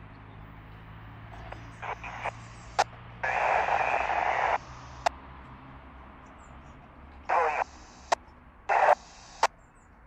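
A Yaesu FT-60 handheld's speaker gives FM receiver hiss on the ISS downlink, broken by four sharp clicks and several bursts of louder static. The longest burst lasts over a second, a little past three seconds in. This is the sound of a weak satellite signal fading in and out.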